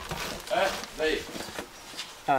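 Hand rubbing crushed roasted peanuts across a woven bamboo sieve, a soft scratchy rustle of grains on the weave as the meal is sifted. Two brief snatches of voices come over it.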